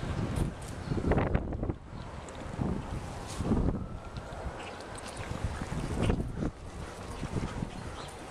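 Wind buffeting the microphone in uneven gusts, a low rumbling that swells and fades several times.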